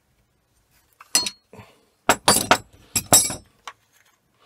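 Sharp metallic clinks and clicks as an old float-valve body and its end cap are handled and unscrewed: a single click about a second in, then two tighter clusters around two and three seconds in.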